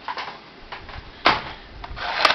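Clear plastic blister tray with an action figure in it, handled and lifted off a wooden table: a few light clicks and knocks of plastic, the loudest a little past halfway.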